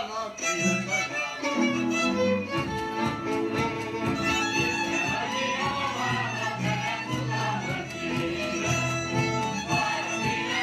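Hungarian folk music led by a fiddle with string accompaniment and a low bass line, played with a steady dance rhythm.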